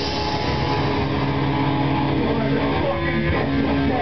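Grindcore/hardcore band playing live in a small room: electric guitar and bass guitar holding long, ringing notes, with a few pitch bends.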